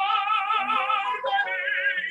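Operatic tenor voice singing an aria, holding a note with a wide vibrato and then moving to a new note a little past the middle. Recorded through an iPhone's built-in microphone.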